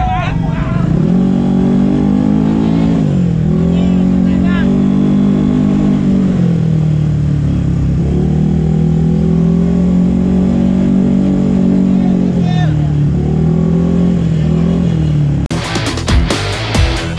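Ported single-cylinder engine of a Vespa matic scooter revving hard, held at high revs and dropping back and climbing again several times; background voices; music comes in just before the end.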